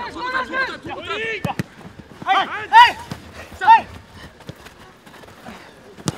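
Footballers shouting and calling out in short loud bursts during a training game. There are two sharp knocks of the ball being kicked about a second and a half in.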